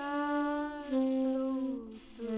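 Tenor saxophone playing a slow line of three held notes, each stepping down in pitch.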